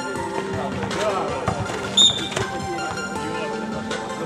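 A basketball bouncing on an outdoor asphalt court over background music and voices. About halfway through comes a short, high whistle blast, the loudest sound.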